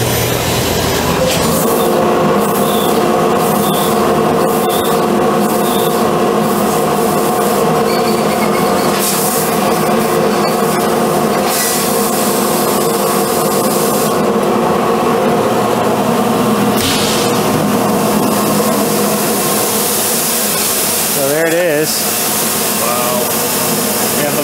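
Amada Brevis laser cutting machine running a cutting program: a steady machine hum with several held tones, broken by bursts of hissing that start and stop several times as the head cuts holes in the sheet-metal box.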